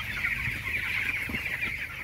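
A large flock of young broiler chicks peeping all at once: a dense, continuous high chirping from many birds together.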